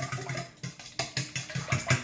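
A fork beating egg, oil and milk together in a stainless steel mixing bowl, clinking against the metal in a quick, steady rhythm.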